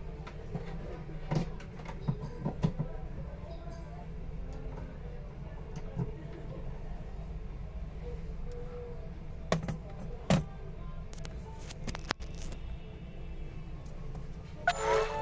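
Steady low room hum with faint background music, broken by a few scattered sharp clicks and knocks from handling a phone and a laptop.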